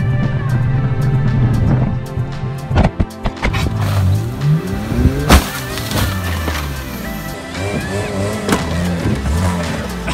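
Car engine revving and a car crashing, with a sharp impact about five seconds in, the loudest moment, and knocks a couple of seconds earlier, all under a background music track.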